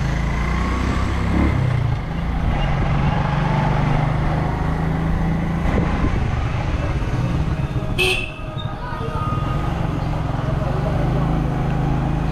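Small motorcycle engine running steadily while riding at low speed, heard from the bike itself along with road noise. About eight seconds in there is a brief sharp high sound.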